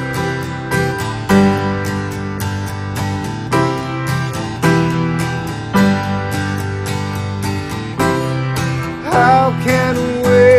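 Acoustic guitar strummed in a steady rhythm over sustained keyboard chords, an instrumental passage of a live acoustic song. About nine seconds in, a voice slides up into a long held sung note.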